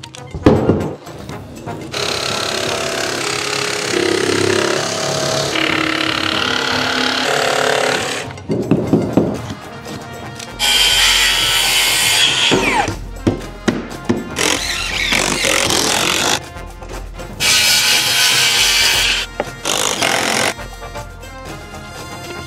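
A circular saw with an electric blade brake cutting through a wooden board in several passes, each cut a few seconds long and stopping abruptly, with a falling whine in the middle of the longest cut. Background music plays under it.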